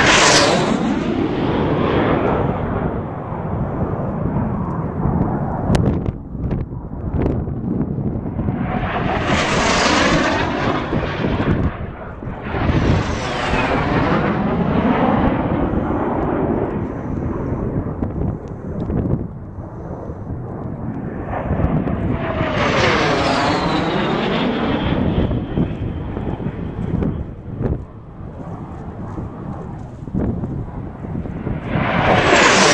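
Racing airplanes flying low past, one after another: about four passes, each swelling up and dying away. On the later ones the engine pitch drops as the plane goes by.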